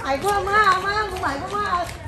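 A high-pitched voice making a drawn-out, wavering wordless vocal sound, sing-song in pitch, broken once near the middle.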